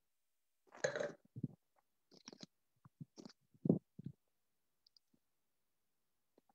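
A person sipping wine with a short slurp about a second in, followed by a run of faint wet mouth clicks and smacks as the wine is worked around the mouth.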